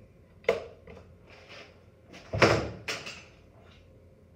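A few sharp knocks and a rattling clunk from the locked doorknob assembly on its wooden block being handled, the loudest about two and a half seconds in; no drill is running.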